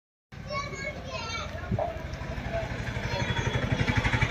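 Voices at first, then an idling engine's steady, rhythmic low throb that grows louder over the last two seconds.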